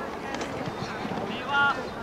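Distant voices of players and spectators at a youth soccer match over wind noise on the microphone, with one short, high-pitched shout about one and a half seconds in.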